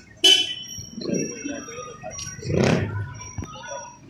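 A man's voice making short, broken vocal sounds with no clear words, after a sharp noisy burst just after the start.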